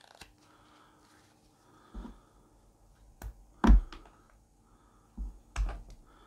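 A carving knife taking a few short cuts into a wooden spoon blank: scattered sharp clicks and light knocks between quiet gaps, the loudest a little under four seconds in.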